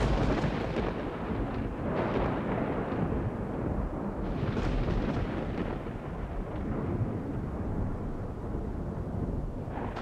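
A deep, continuous rumbling roar like rolling thunder, swelling in the middle and easing a little near the end.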